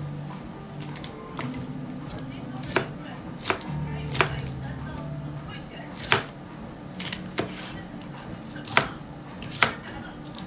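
Chinese cleaver chopping red cabbage on a plastic cutting board: about eight sharp knocks of the blade on the board, unevenly spaced, starting about three seconds in.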